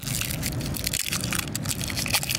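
Crackling and clicking of AA batteries being pulled apart in the hands from their plastic wrapping, a rapid, irregular string of small crackles over a low rumble.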